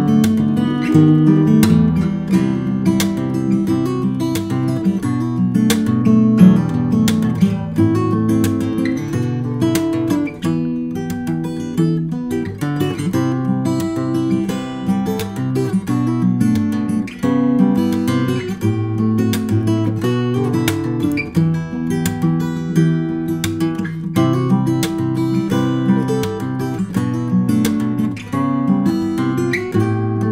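Solo acoustic guitar, a Beneteau, played fingerstyle in standard tuning: a continuous passage of plucked melody over bass notes, with frequent sharp, crisp note attacks. Recorded dry, without reverb.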